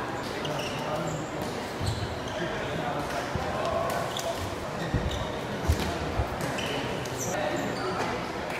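Thuds of players' feet and kicks during a shuttlecock-kicking rally on a sports-hall floor, a few sharp ones about five to six seconds in. Under them is the chatter of players and spectators, echoing in the large hall.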